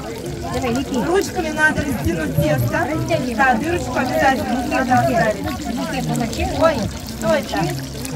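Indistinct talking from several people, voices overlapping steadily throughout.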